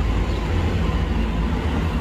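Loud outdoor background noise: a steady low rumble with a fainter hiss over it, the kind of noise he later calls a little loud outside.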